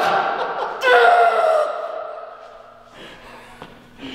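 A man's drawn-out cries of strain and pain as he presses a barbell while lying on a spiked acupuncture mat. One cry ends just as the sound begins, and a second, longer cry starts about a second in, falls slightly and fades away.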